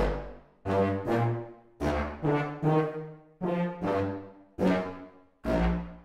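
Sampled low brass and woodwinds playing together from a keyboard: Spitfire Studio Orchestra contrabass trombone, contrabass tuba, contrabass clarinet and contrabassoon, all on staccato patches. About ten short, punchy low notes, each with a quick attack and fast decay.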